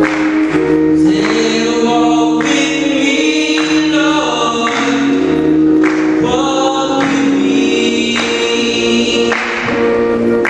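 Gospel song sung by a male soloist through a microphone, with long held notes over sustained keyboard accompaniment.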